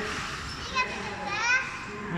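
Children's high-pitched voices calling out over the general hubbub of an indoor play hall, with a brief rising call about a second and a half in.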